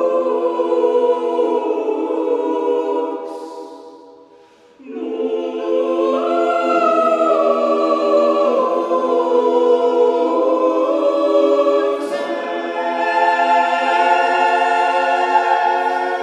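Mixed choir singing a contemporary choral work a cappella in sustained chords. About three seconds in the chord fades away to a brief near-pause, and the choir comes back in together just before five seconds.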